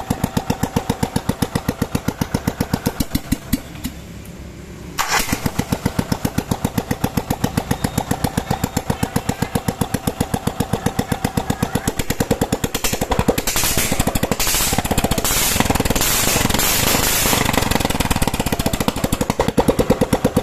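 Kawasaki FE350D single-cylinder four-stroke petrol engine running with an even firing beat, healthy and strong. The sound drops away for about a second near four seconds and the beat comes back sharply. From about halfway it runs faster and louder as the throttle is opened.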